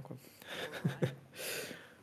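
A pause in two men's speech: a brief spoken word, faint murmurs, then a soft breath drawn in close to the microphone about a second and a half in.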